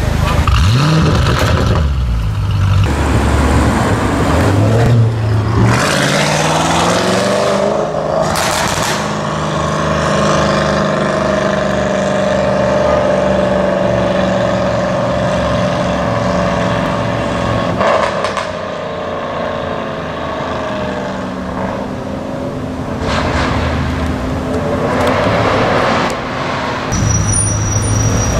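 Audi RS6 C7's twin-turbo 4.0 V8 through a Milltek straight-pipe exhaust, very loud. It revs with rising pitch about a second in, then accelerates hard again a few seconds later, pitch climbing, and settles into a long steady drone that fades by around eighteen seconds, with a few more swells later.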